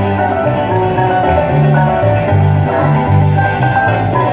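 Live llanero music in an instrumental break: llanera harp and cuatro playing over deep bass notes, with a fast, even maraca rhythm on top.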